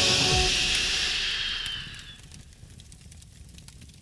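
A dramatic background-score sting: a bright, hissing whoosh with a low hit near the start, fading away over about two seconds into a quiet tail.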